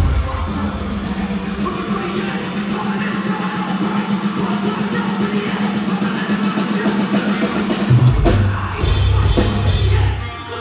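Live rock band playing through a venue PA. The heavy bass and drums thin out at the start, leaving a steady held low note under the band, and the full low end comes back in about eight seconds in.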